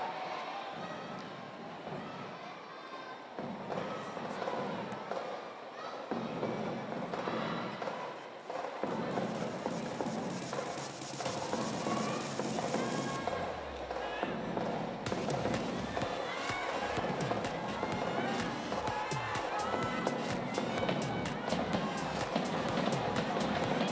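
Music over an arena's sound system with voices in the crowd. A high hiss swells for a few seconds around ten seconds in, and from about 15 s in a rapid patter of sharp claps or bangs joins the music.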